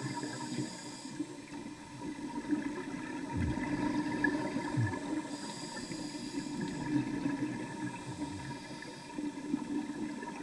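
Underwater gurgling and rushing of scuba exhaust bubbles, uneven in level, over a faint steady hum.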